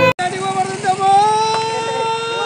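A person's voice holding one long call that rises slowly in pitch, with a steady low hum underneath. It starts just after a brief cut to silence.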